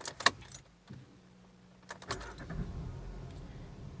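Manual car's engine being started: a few clicks, then about two seconds in the engine fires and settles into a steady idle at around 750 rpm.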